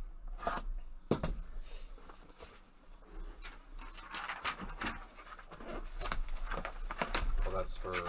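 Plastic shrink wrap being torn and crinkled as it is stripped off a trading-card hobby box, in irregular crackles and rustles.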